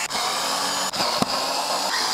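Cordless electric screwdriver running steadily with a faint whine, backing a screw out of the plastic headlight housing, with a few sharp clicks.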